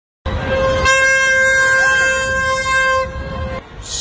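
A horn sounding one long steady note that starts suddenly and lasts about three seconds, then weakens and stops.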